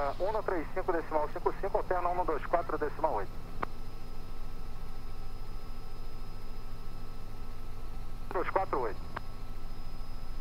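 Steady cabin drone of a Robinson R66 helicopter in cruise, its turboshaft engine and rotors running evenly with a faint steady whine. A man's voice talks over it for the first three seconds and again briefly near the end.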